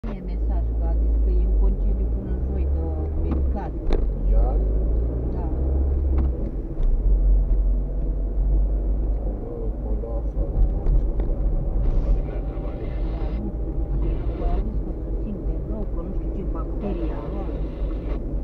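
Car engine and road noise heard from inside the cabin while driving slowly through town, a steady low rumble that is heaviest in the first few seconds. Brief patches of brighter hiss come about twelve, fourteen and seventeen seconds in.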